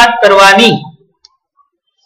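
A man's voice speaking Gujarati stops a little under a second in, followed by near silence with one faint click.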